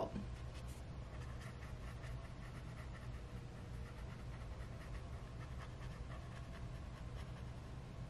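Faint soft strokes of a Tombow water-based brush marker's tip rubbing over coloring-book paper, blending the pencil color, over a steady low hum.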